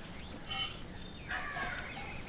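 A brief noisy burst about half a second in, the loudest sound, then a bird calling with a wavering, bending call near the end.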